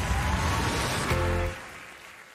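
TV show transition sound effect: a noisy whoosh over a deep rumble with a faint rising tone, then a short held musical chord about a second in, fading near the end.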